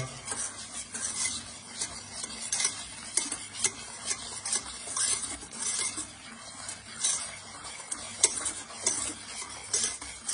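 Wire balloon whisk beating egg yolks, sugar and cornstarch into a thick paste in a stainless steel pan, the wires scraping and clicking against the metal in quick, irregular strokes, about two or three a second.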